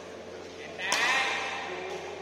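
A sharp smack about a second in, then at once a player's short, wavering shout as a badminton rally ends.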